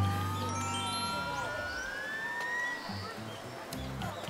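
An electronic sound effect: one tone gliding slowly upward over about three seconds and fading away, with a lower tone sliding downward at the start.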